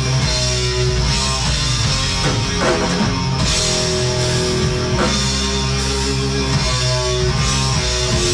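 A black metal band playing live: distorted electric guitars, bass and drums in a loud, dense, unbroken wall of sound, with the chord shifting every two seconds or so.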